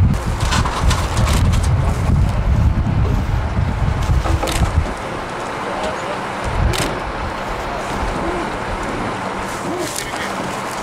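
Gusty wind buffeting the microphone as a heavy low rumble, cutting off abruptly about halfway through; after that a steady outdoor hiss with faint distant voices.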